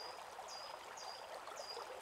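Faint forest ambience: a soft, steady stream-like water hiss with a high short chirp repeating about twice a second.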